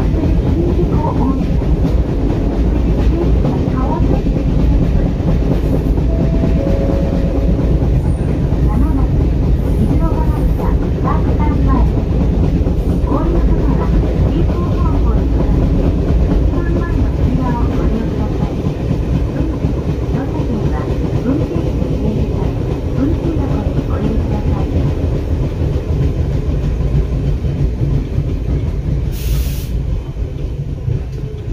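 Ichibata Electric Railway train running, heard from inside the carriage: a steady low rumble of wheels on the rails. It grows a little quieter over the second half as the train slows into a station.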